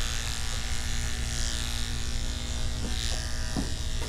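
Electric hair clippers buzzing steadily as they cut short hair at the side of a man's head.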